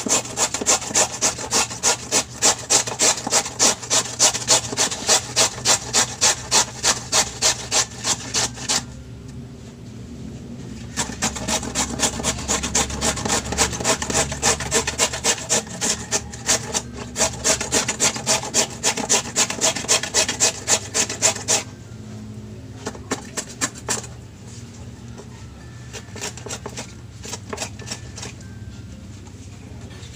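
Carrot being grated on a plastic box grater, a steady run of rasping strokes about two to three a second. The strokes stop for a couple of seconds, start again, and thin out into a few scattered strokes near the end.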